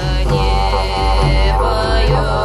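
Siberian folk music: a low, pulsing drone from a long wind pipe, swelling in a regular rhythm, under a higher melodic line.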